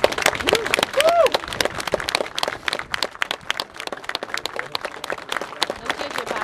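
Audience applauding: many hands clapping unevenly, with a brief voice calling out about a second in.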